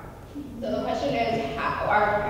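A person speaking, the voice coming in about half a second in and getting louder, with no other clear sound.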